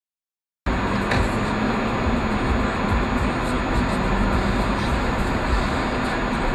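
Dead silence for about half a second, then steady road and engine noise from a car driving along, heard inside the cabin through a dashcam microphone.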